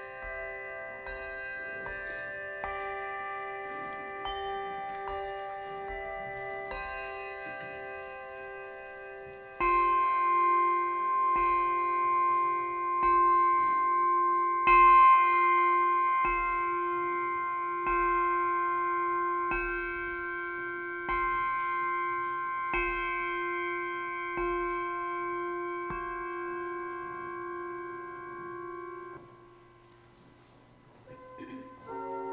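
Handbells mounted on a stand, struck one at a time with a mallet, play a slow tune; each note rings on under the next. The notes get louder and more spaced about ten seconds in, and the ringing is cut off just before the end.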